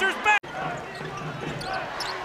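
A basketball being dribbled on a hardwood court, with the murmur of the gym crowd behind it. The sound cuts off abruptly for an instant about half a second in, then the court sound comes back.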